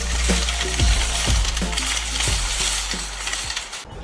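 Plastic grocery bags rustling and crinkling in a metal shopping cart, fading near the end, with the thumping beat of background music underneath.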